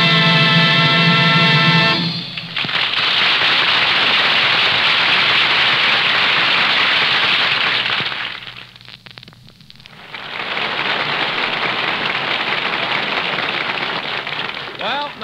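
A radio studio orchestra holding a closing chord for about two seconds, then a studio audience applauding; the applause drops away briefly about eight seconds in and swells again. The sound is dull and band-limited, as on a 1940s broadcast transcription.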